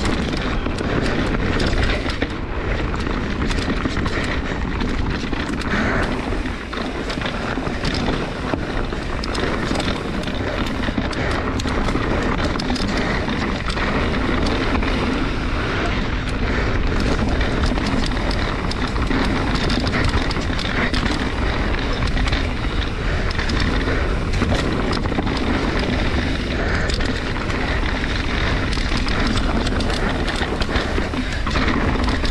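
Mountain bike descending a dirt singletrack at speed: tyres running over dirt and roots, with steady knocks and rattles from the bike over the bumps. Wind buffets the microphone throughout.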